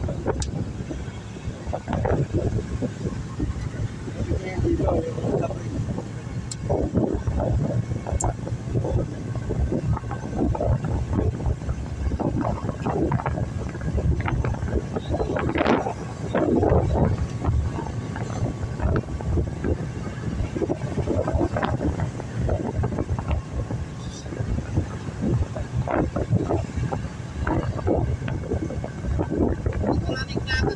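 Steady rumble of a van's engine and tyres at highway speed, heard from inside the cabin.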